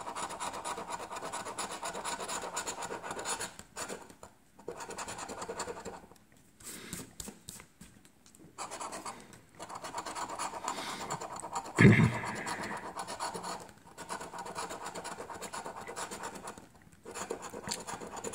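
A coin scratching the coating off a paper scratch-off lottery ticket in quick repeated strokes, with a few short pauses. There is one brief louder sound about twelve seconds in.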